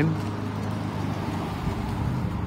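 Steady low hum of a motor vehicle engine with street noise around it.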